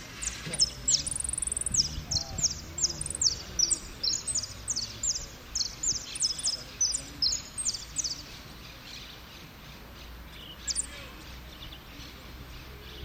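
A jilguero (saffron finch) singing a repique-style song: a quick run of short, high, ringing notes, about two to three a second, for most of the first eight seconds, then a single note near the end.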